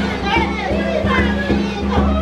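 Andean folk music played live: a handheld frame drum (caja) struck in a steady beat under a held flute tone, with high voices calling out over it.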